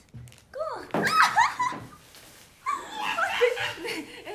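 A young woman's high-pitched squeals and laughter in two loud bursts, the first about a second in and the second near the end.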